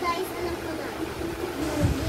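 A young girl talking, with pitched, broken voice sounds over a low rumble.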